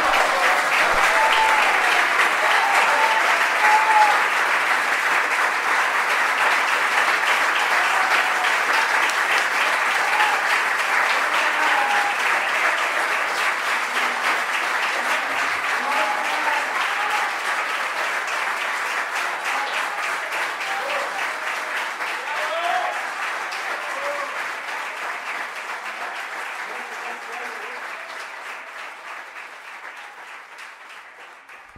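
A live audience applauding at length, with scattered shouts and voices in the crowd; the applause fades out gradually over the last several seconds.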